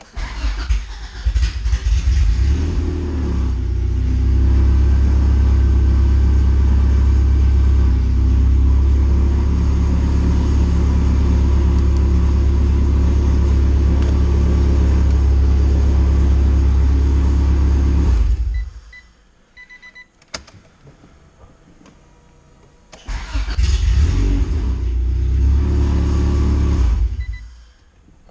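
Acura Integra GSR engine heard from inside the cabin. It is cranked and catches within a few seconds, then idles steadily for about fourteen seconds before it is switched off. After a pause with a few clicks it is started again and runs for a few seconds before cutting off near the end. The engine starting now that the ECU has been moved points to a loose wire in the injector circuit, as the mechanic suspects.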